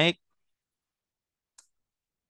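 A spoken word trails off, then near silence broken by a single short, faint computer-mouse click about a second and a half in.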